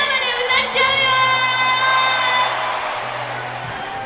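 A female singer's voice through the hall's sound system, drawn out on one long call. A large crowd cheers and whoops under it and after it, and the cheering fades toward the end. Quiet backing music runs underneath.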